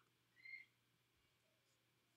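Near silence: room tone, with one faint, short high chirp about half a second in.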